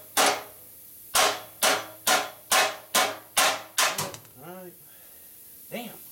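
Hand hammer striking the steel frame of a sandblast cabinet's rotary table, a run of about nine sharp ringing blows at roughly two a second, ending about two-thirds of the way through.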